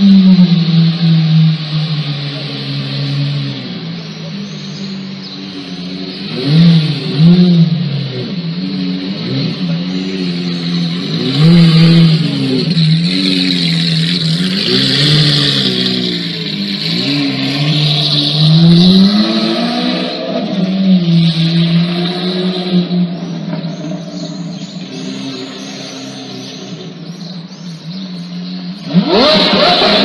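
Lamborghini engine idling and being revved again and again, its pitch climbing and dropping with each blip of the throttle, with a sharp rise in revs near the end.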